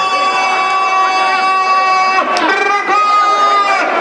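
Race announcer's voice drawn out into two long held calls, the second a little higher, as the horses break from the starting gate, over crowd noise.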